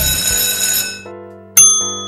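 The end of a quiz countdown music cue, its last chord ringing out and fading. About a second and a half in, a single bright bell-like chime strikes and rings on, marking the end of the countdown as the answer is revealed.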